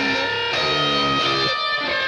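Instrumental song intro: a guitar riff whose notes shift about every half second.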